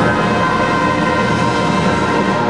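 Seventh-grade concert band holding one loud sustained chord, brass and woodwinds together: the final chord of a piece.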